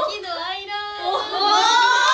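Several young women talking and laughing, with one high, drawn-out voice that rises from about a second in.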